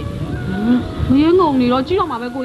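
Speech only: film dialogue between a man and a woman, one voice rising high in pitch.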